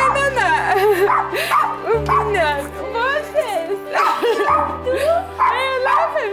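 Background music with held low notes that change about every two seconds, under many short, high, sharply bending cries or yelps.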